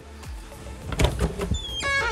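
A door latch clicking about halfway through, then the door's hinges creaking as it swings open, a pitched squeak starting near the end.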